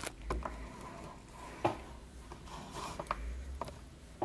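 Handling noise from a camera being moved over a craft desk: a few light clicks and knocks, soft rubbing, and low rumbles a moment in and again past the middle.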